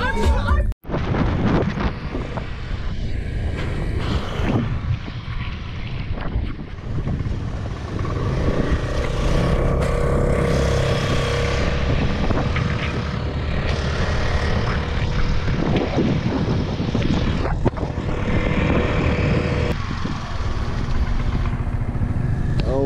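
Motor scooter riding along a road, its small engine running under steady road and wind noise picked up by a camera on the scooter. A steady engine note holds from about a third of the way in until near the end.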